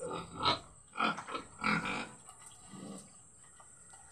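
A pig grunting several times in short bursts, most of them in the first two seconds and a fainter one about three seconds in.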